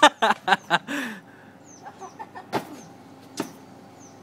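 A person laughing in short bursts for about the first second, then two sharp knocks about a second apart, with a bird chirping faintly in the background.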